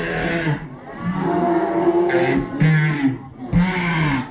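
Loud music with a voice singing over it.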